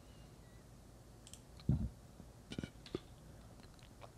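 A few computer mouse clicks over quiet room tone, with one louder, duller knock a little before halfway.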